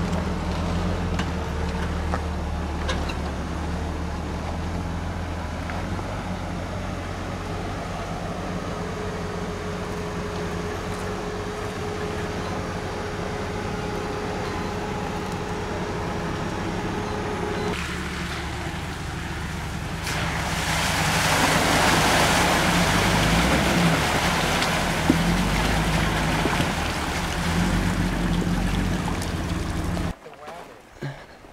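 4x4 engine running steadily at low revs while the vehicle crawls over rocks, a low, even rumble. About twenty seconds in, a loud rushing hiss joins it.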